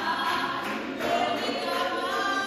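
A women's choir singing a cappella, many voices together holding sustained notes.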